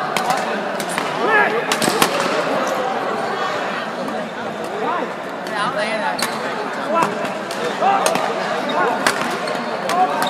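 Badminton rally: sharp racket strikes on the shuttlecock, roughly one a second with a pause in the middle, over background chatter.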